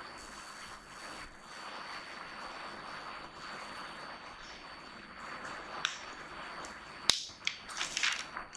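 Steady background hiss of a classroom with a faint high whine, broken about seven seconds in by a sharp click and then a few smaller clicks and knocks.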